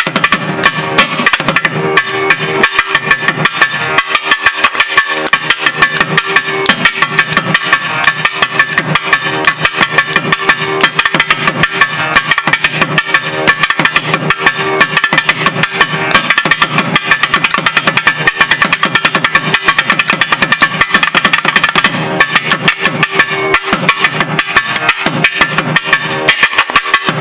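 Thavil solo: rapid, unbroken strokes, the player's capped fingers striking the drum's right-hand head in a fast, dense rhythm.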